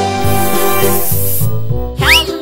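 Aerosol spray-can hiss sound effect, lasting about a second and a half and then cutting off, over cheerful children's background music.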